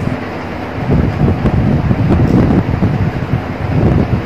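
Uneven low rumble of air buffeting the microphone, louder from about a second in, while a woman bites into and chews a slice of soft cream cake.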